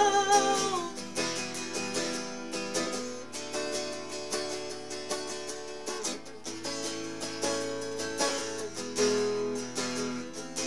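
Electric guitar strummed in a steady chord pattern through a small amp, which sounds raspy and is starting to act up. A sung note tails off in the first second.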